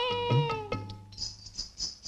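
Film-song soundtrack: a woman's voice holds a sung note that slides down and ends under a second in. Light jingling percussion follows, about four strokes a second.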